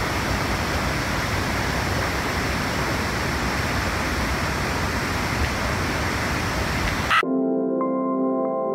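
Steady rushing roar of a swollen, muddy river pouring over a waterfall. About seven seconds in, the water sound cuts off abruptly and ambient music with long held tones begins.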